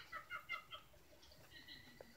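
Elmo plush toy's high voice, faint and played back through a screen's speaker: a click, then a quick string of short chirpy syllables in the first second, thinning to a held high note near the end.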